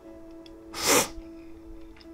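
A person crying: one short, sharp sobbing breath about a second in, over soft sustained background music.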